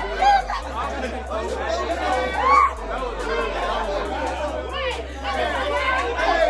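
A group of people talking, shouting and laughing over each other in a room, with music and its bass line playing underneath.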